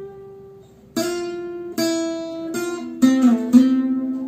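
Cort acoustic guitar picked as a slow single-note lick: five plucked notes spaced roughly half a second to a second apart, one bending slightly in pitch near the end, the last left ringing.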